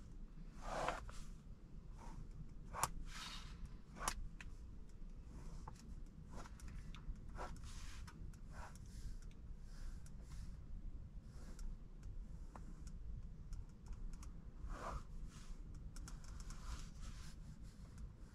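A pen drawing on a paper pad: quiet, irregular scratching strokes of the tip across the paper. A few sharper strokes come in the first few seconds.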